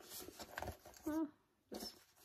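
Handling noise from a small coated-canvas handbag: a few soft rustles and knocks as a round pouch is pushed inside it.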